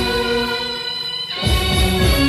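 Indian brass band playing a film-song tune: a long held chord of steady sustained notes, the drums dropping out and coming back in heavily about one and a half seconds in.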